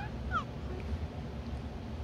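An 8-month-old baby gives a brief high-pitched squeal that falls in pitch, about a third of a second in. A low steady hum runs underneath.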